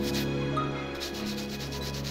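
A cloth rubbing over a metal rhinestone crown as it is polished by hand, in short repeated strokes, strongest near the start. Soft background music with sustained tones plays underneath.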